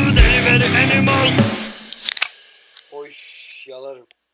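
Loud distorted rock song with guitar, ending and dying away about a second and a half in. Then a couple of clicks and two brief snatches of voice near the end.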